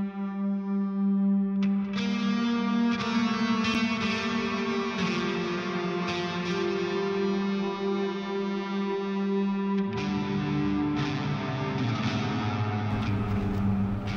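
Film score music: sustained droning notes with an echoing, effects-treated, guitar-like tone. The texture changes about two seconds in and again around ten seconds in.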